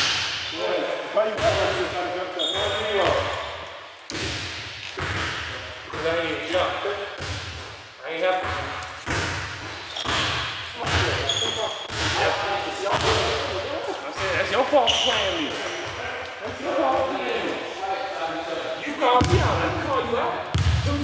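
A basketball being dribbled on a hard court, bouncing about once a second, with players' voices and chatter over it.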